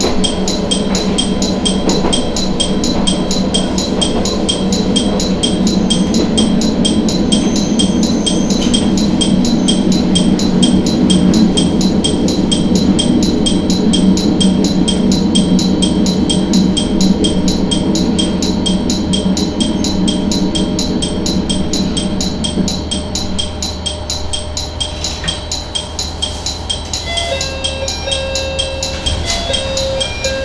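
Matsuura Railway diesel railcar running under power, heard from the cab. Its engine note drops away about three-quarters through as the train coasts toward the station. A fast, steady ticking goes on throughout, and a short chime melody sounds near the end.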